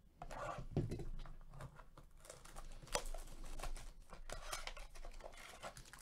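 Cardboard trading-card mini-box being opened and a foil card pack handled, with irregular crinkling, rustling and tearing clicks and one sharper click about three seconds in.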